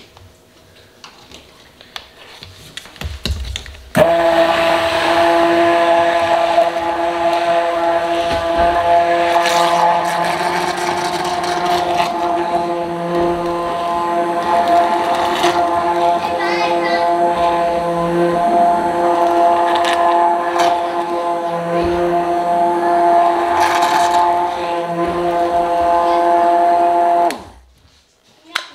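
Electric immersion blender running in a plastic pitcher, mixing chocolate milk powder into cold milk: the motor starts suddenly about four seconds in, runs at a steady pitch for over twenty seconds, and cuts off just before the end.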